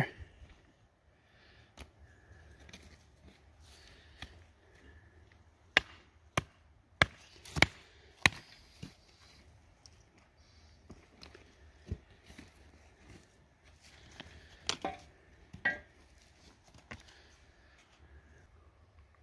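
Sharp knocks and clacks of hard rock samples being handled and knocked against stone: a run of about five, a little over half a second apart, about six seconds in, then two more near the end, with a few fainter taps between.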